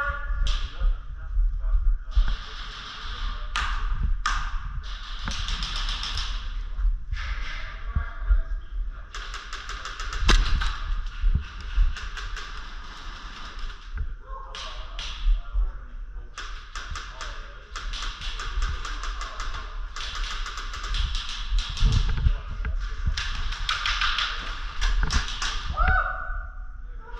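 Airsoft guns firing in rapid bursts of sharp ticks, mixed with single clicks and taps.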